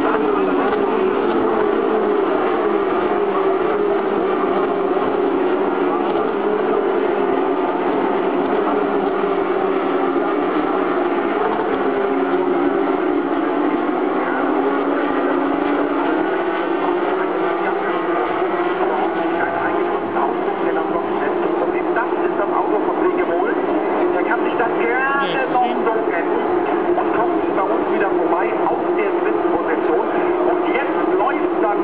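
Several Porsche 911 GT3 Cup race cars' flat-six engines running hard through a corner, sounding over one another, their pitch rising and falling with acceleration and gear changes as the cars pass.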